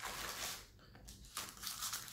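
Baking paper crinkling and rustling as a sheet of ready-rolled puff pastry is lifted and peeled off it, in two short bursts: one right at the start and another about one and a half seconds in.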